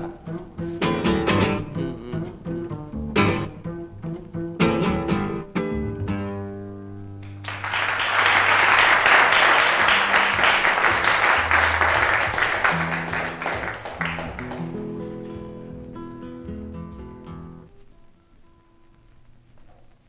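Acoustic guitar strumming the closing chords of a live song, then audience applause breaking out about eight seconds in while the guitar keeps sounding notes underneath. The applause dies away after about fifteen seconds and the last notes fade out near the end.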